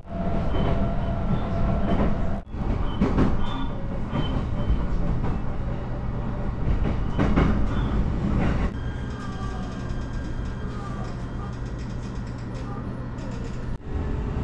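Running noise of an electric commuter train heard from inside the passenger car: a steady rumble of wheels on rail. About nine seconds in, the train enters a long tunnel and the sound becomes a steadier, slightly quieter hum with a few steady tones.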